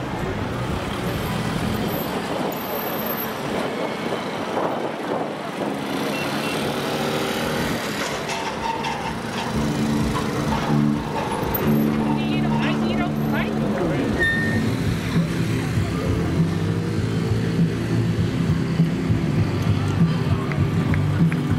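Busy street noise: a crowd chatting while an ambulance van moves slowly through at walking pace, with traffic around it. From about halfway through, held musical notes come in and continue under the chatter.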